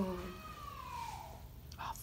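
A faint, high-pitched, drawn-out vocal squeal that slowly rises and falls in pitch. A short sharp sound comes near the end.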